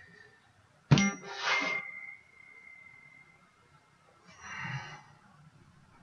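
A sharp strike about a second in, followed by a single bell-like ding that rings out on one high tone for about two seconds. A short, softer noise comes near the end.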